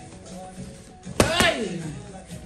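Boxing gloves striking handheld Thai pads twice in quick succession, a one-two combination a little over a second in, each a sharp smack.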